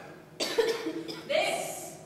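A person coughing twice, about a second apart; each cough starts abruptly.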